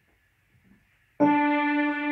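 Electronic keyboard: after near silence, a single note starts abruptly about a second in and is held steadily.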